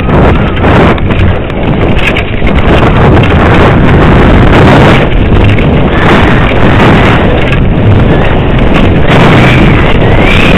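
Wind buffeting a head-mounted camera's microphone at downhill speed, mixed with the rattle and rumble of a mountain bike running over rough dirt trail. Loud throughout, easing slightly for a moment about a second in.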